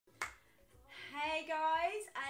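A single sharp hand clap shortly after the start, then a woman's voice calling out with long, drawn-out vowels, over background music with a steady low beat.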